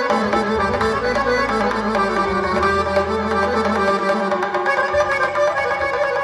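Live instrumental band music, amplified: violin and a long-necked lute playing the melody over a frame drum and keyboard, with no singing.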